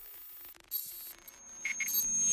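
Electronic glitch sound effects for an animated title: quiet crackly static, then two short high beeps in quick succession about three-quarters of the way through, and a rising swell near the end.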